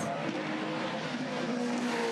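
Supercars V8 race car engines running on track as the cars come through a corner, a fairly steady engine note.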